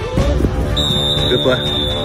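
One long, steady, high-pitched whistle blast, typical of a referee's whistle stopping a play, starts just under a second in and runs over music and shouting voices.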